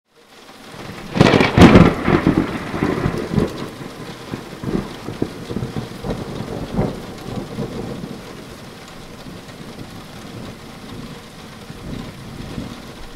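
Thunderstorm: steady rain with a loud thunderclap about a second in, its rumble rolling on and fading over the following several seconds.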